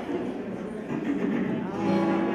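Indistinct voices murmuring in a large hall, with a sustained, steady pitched note starting near the end.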